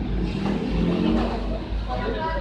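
Indistinct voices of several people talking at a shop counter over a steady low rumble.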